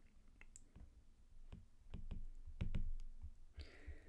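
Light, irregular clicks of a stylus tip tapping a tablet's glass screen as an equation is handwritten. A soft breath near the end.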